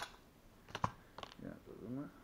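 Wooden blocks being handled and set down on a table: a sharp click at the start, a louder wooden knock just under a second in, and two lighter clicks after it, with a short voice-like sound near the end.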